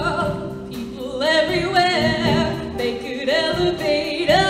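A high school show choir singing together in several voices, with a new loud phrase coming in about a second in.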